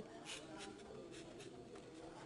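Near silence: faint, indistinct background noise with a few soft scratchy sounds, during a gap in the voice.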